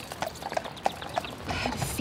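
Hooves of a horse pulling a carriage, clip-clopping at a walk with about three hoof strikes a second.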